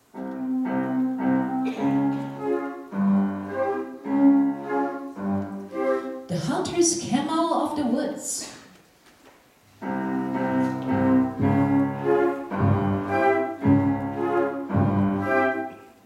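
Flute ensemble with saxophones and clarinet playing a passage of short, detached chords. About six seconds in, the chords give way for roughly three seconds to a noisier, higher sound, then the chords resume.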